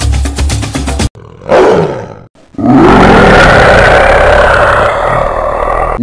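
Music with a fast even beat cuts off about a second in. A tiger then roars: first a short roar falling in pitch, then, after a brief gap, a long loud roar of about three seconds.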